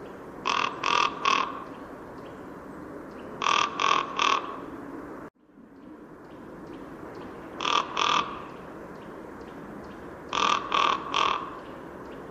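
Common raven giving short calls in quick series: three calls, then three, then two, then three, each series lasting about a second, over a steady background hiss.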